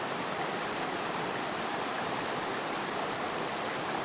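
Shallow rocky stream flowing over and around stones, a steady, even rush of water.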